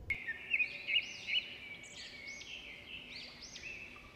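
Birds chirping: a run of short, high notes that rise and fall, repeated over a steady high twitter.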